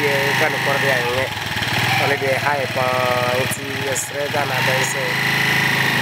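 A small engine running steadily, with people's voices talking over it.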